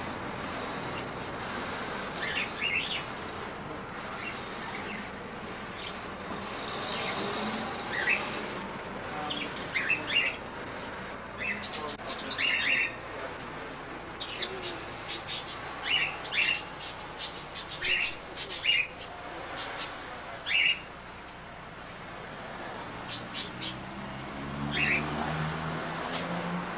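Caged parakeets chirping: many short, high chirps scattered irregularly, thickest through the middle of the stretch, over a steady background hiss.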